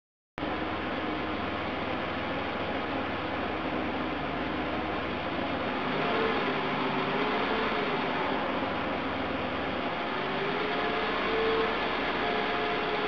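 1992 Ford Explorer's 4.0-litre V6 idling, a steady running hum with a faint wavering tone, heard from inside the vehicle. The sound is briefly cut off at the very start.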